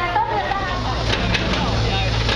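Hydraulic excavator's diesel engine running with a steady low drone that grows louder about a second in, with a few sharp knocks on top.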